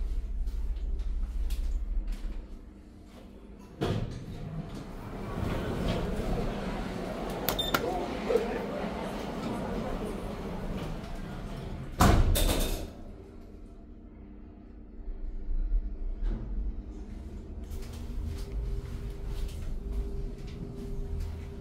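Stannah passenger lift: a low hum as the car travels, a clunk, then its stainless-steel sliding doors open onto station concourse noise with voices. About twelve seconds in the doors shut with a loud knock, and a low hum follows as the lift runs again.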